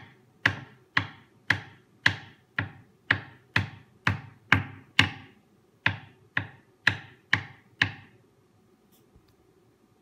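A steady run of sharp knocks, about two a second, each with a short ring-out, with one slightly longer gap near the middle. These are impacts that give the piezoelectric and MEMS accelerometers a shock impulse. The knocking stops about eight seconds in.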